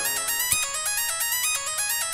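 Music: a trap instrumental cut down to a lone high melody of quick, short notes stepping up and down, with no vocals, bass or drums.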